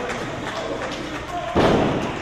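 A single heavy thud on a wrestling ring about one and a half seconds in, short and deep, over a quiet background of voices.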